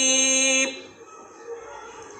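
A man reciting the Quran in Arabic, holding a long drawn-out vowel on one steady pitch. The vowel cuts off about two-thirds of a second in, leaving a pause with only faint room noise.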